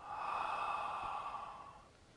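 A person's long, sigh-like breath out through the mouth, swelling in at once and fading away over just under two seconds, taken while holding a yoga backbend (upward-facing dog).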